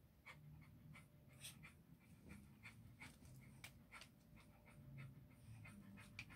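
Near silence: room tone with faint, soft breathing sounds in short irregular puffs, roughly two a second.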